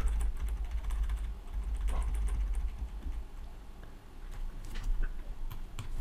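Computer keyboard keys clicking over and over: arrow-key presses nudging a selected element. A low rumble sits underneath in the first half.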